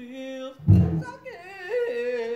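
A galvanized trash-can washtub bass plucked once about two thirds of a second in, a deep note that dies away within half a second. A high, wavering voice carries a line over it, breaking between pitches in the second half.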